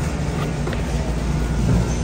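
Steady low rumble of store background noise, with a couple of faint clicks.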